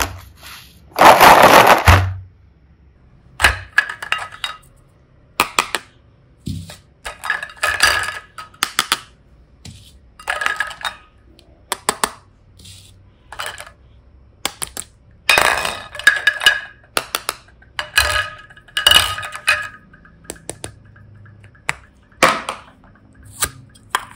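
Hard plastic toy snails clacking together as they are handled, with a loud rattle of them shifting in a plastic basket about a second in. After that, bursts of clinking as they are knocked against each other and set down in a glass bowl.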